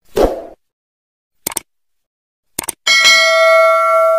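Subscribe-button animation sound effects: a brief swoosh, two sharp mouse-style clicks about a second apart, then a bright bell ding that keeps ringing in several clear tones near the end.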